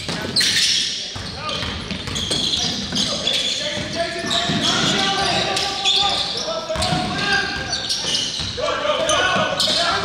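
Live basketball play in a gym: a basketball bouncing on the hardwood court amid players' voices calling out, all echoing in the large hall.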